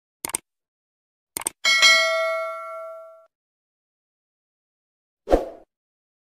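Subscribe-button animation sound effect: two quick pairs of mouse clicks, then a bell ding that rings for about a second and a half and fades. A short thump comes near the end.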